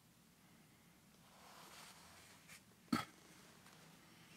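Very quiet handling of a plastic container after the last of the liquid clay slip is poured from it into a plaster mold: a faint rustle about a second in, then one sharp knock just before three seconds in.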